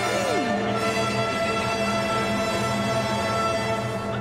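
Orchestral music with bowed strings playing held chords, with one swooping note falling in pitch near the start, played as a panellist's buzzer sound.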